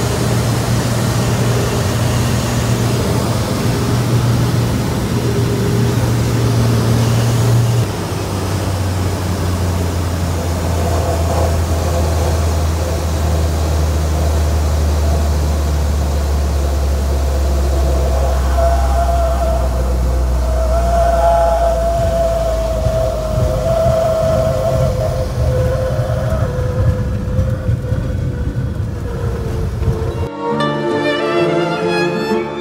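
De Havilland floatplane's piston engine and propeller running steadily in the cabin. The pitch steps down about eight seconds in and sinks again in the second half as power comes back for the descent onto the lake. A higher wavering tone joins in during the second half.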